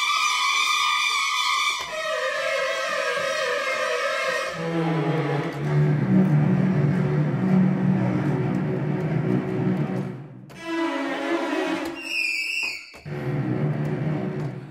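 Sampled orchestral string effects from ProjectSAM Symphobia's 'Shrieking Strings' patch: wavering, dissonant clusters of held string notes, played first high, then in the middle register, then low and dense, with a short break about ten seconds in.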